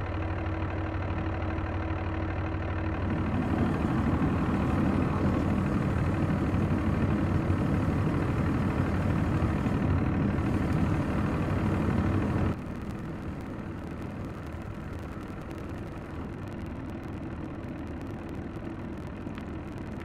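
Propane torch running with a steady hissing roar as a brush pile is lit. It grows louder about three seconds in, then drops suddenly to a quieter steady rush about twelve seconds in.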